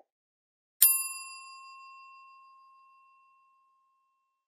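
A single bright bell-like ding about a second in, ringing out and fading away over about two and a half seconds: the notification-bell chime sound effect of a subscribe-button animation.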